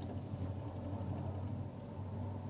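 Quiet steady low hum of studio room tone picked up by the microphone, with a faint hiss and no distinct events.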